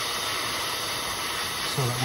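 Hand-held propane torch burning with a steady hiss, its blue flame held on a seized steel brake line fitting to heat it.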